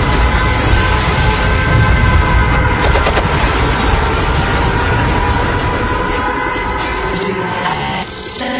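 Live concert song intro: a loud, dense wash of noise and booms over sustained synth tones, with a deep rumble that drops out about seven seconds in.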